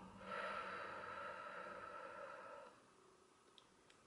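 A woman's long, soft exhale, a deliberate deep breath out in a relaxation breathing exercise, lasting about two and a half seconds and fading away.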